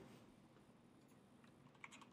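Near silence: room tone, with a couple of faint clicks near the end.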